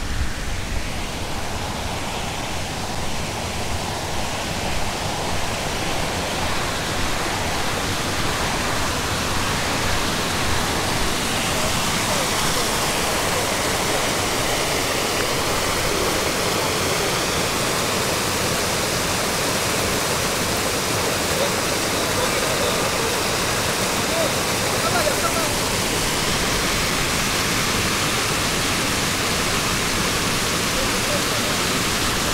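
Water running down a small stepped rock cascade in a stream channel: a steady rushing hiss that grows slightly louder over the first half.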